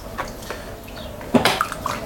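Water splashing and sloshing as wet hands come down on a lump of clay on a spinning potter's wheel, starting suddenly about a second and a half in.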